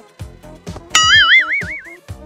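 Background music with a light beat, over which a comic 'boing' sound effect starts about halfway through: a tone that springs up in pitch and then wobbles rapidly up and down.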